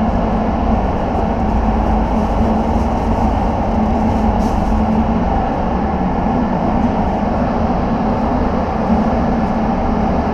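Downdraft extraction fans of a grated-floor paint prep bay running with a steady rumble and low hum. Faint rustling of masking plastic being handled comes through about four seconds in.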